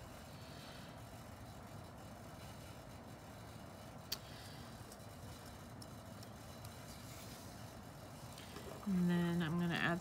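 Faint steady room noise with a single small click about four seconds in, then a woman speaking near the end.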